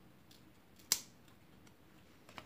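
One sharp snip of a pair of scissors about a second in, with a few faint ticks of handling around it.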